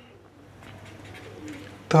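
Faint scratching of a pen writing on paper over quiet room tone, with a faint low call, like a bird's coo, about three quarters of the way in.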